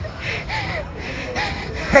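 A woman gasping in fright: a few breathy gasps with short high-pitched voiced catches, ending in a sharper, louder gasp.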